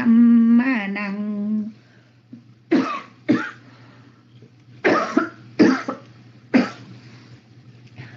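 A person coughing five times, spaced out over a few seconds, heard through an online voice-chat microphone with a steady low hum underneath; a held, chanted line of verse ends just before the coughs.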